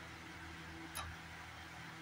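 A single sharp click about a second in, as diced red vegetable is dropped into a steel bowl of raw eggs, over a steady low hum and hiss.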